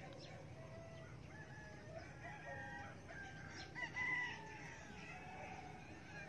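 Faint chicken calls: a rooster crowing and short clucks, the loudest call about four seconds in, over a low steady background hum.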